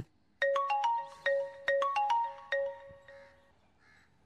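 Mobile phone ringing with a marimba-like melodic ringtone. A quick run of four notes and a fifth is played twice, then it stops, signalling an incoming call that is about to be answered.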